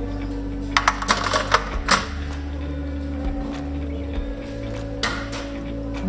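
A quick run of sharp clinks of lidded glass jars knocking against each other and a metal wire basket, about one to two seconds in, over background music.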